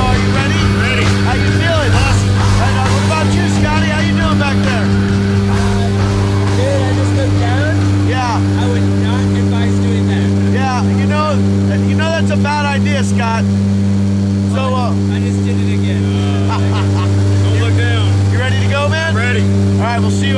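Steady low drone of a propeller jump plane's engines heard from inside the cabin during the climb, one unchanging pitch, with voices raised over it.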